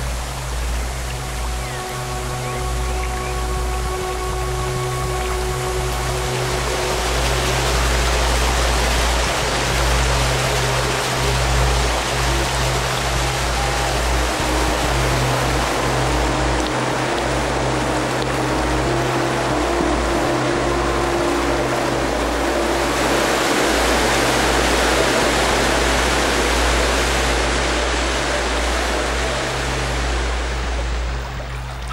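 Fast mountain water rushing over rapids and a waterfall, a steady noise that grows louder about six seconds in and again past twenty seconds, under background music with held low drones and sustained notes.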